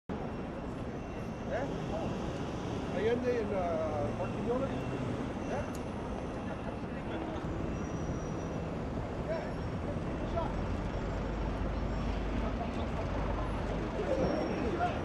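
City street ambience: a steady traffic rumble with scattered voices of passers-by. The low rumble grows heavier in the last few seconds.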